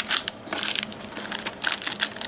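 Clear plastic packaging bags crinkling and rustling as they are handled, an irregular run of crackles.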